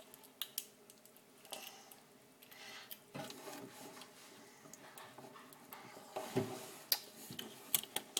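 Handling noise of toys being rummaged through close by: scattered light clicks, taps and soft rustles, with a few sharper taps about three seconds in and again near the end.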